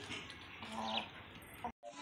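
Chickens faintly vocalising while feeding, with one short low call under a second in. The sound drops out briefly near the end.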